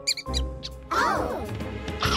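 Cartoon hamster voice effects: a quick run of high squeaks near the start, then a squeaky chattering call about a second in, over light background music.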